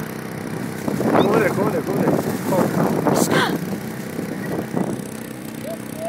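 People laughing and chattering loudly for about four seconds, peaking in a high burst about three seconds in, over a steady low engine drone.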